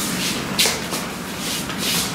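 Rubbing and swishing of arms and clothing as two men make hand contact in a Wing Chun partner drill, with two sharper swishes, one about half a second in and one near the end.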